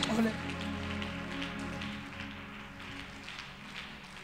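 Held chords of background music under a noisy haze of the congregation praying aloud and shuffling, dying down over the first two seconds and then staying low.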